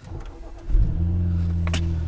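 BMW Z4 sDrive35i's twin-turbo straight-six starting from completely cold. The starter cranks briefly, the engine catches about two-thirds of a second in with a loud flare, then settles into a steady cold idle.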